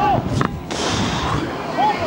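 Strong wind buffeting the microphone in a loud rushing gust that starts about half a second in. Before it comes a sharp knock, and short high-pitched calls sound at the start and again near the end.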